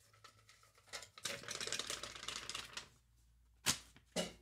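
Faint rustling and crinkling of paper slips being rummaged through and pulled out of a small metal pail, with a single sharp snap of paper near the end.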